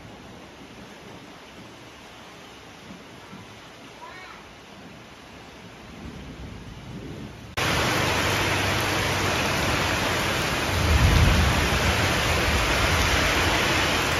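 Heavy rain pouring onto a paved courtyard and plant pots, loud and steady from about halfway in and much quieter before that. A low rumble of thunder swells a few seconds after the rain turns loud.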